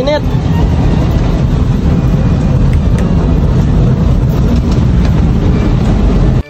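Owner-type jeep on the move, heard from inside its rear cabin: a loud, steady rumble of engine and road noise with a rushing hiss of air over it.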